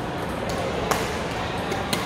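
Badminton rackets striking shuttlecocks: three sharp, crisp hits, the loudest about a second in and another near the end, over the steady hubbub of voices in a large sports hall.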